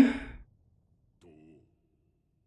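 A man's spoken word trails off and fades in the first half-second, then near silence. About a second and a quarter in, a faint voice is heard briefly.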